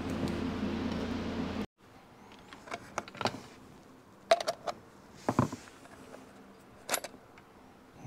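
Steel screwdriver prying and scraping at the crimped chrome bezel ring of a vintage Yamaha tachometer, giving scattered metallic clicks and scrapes a second or so apart as the ring is worked loose. A steady background hum cuts off abruptly under two seconds in.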